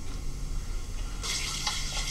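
Hands rubbing together, palm against palm, working a grooming product between them before it goes into a beard. The rubbing starts just over a second in, after a quiet stretch.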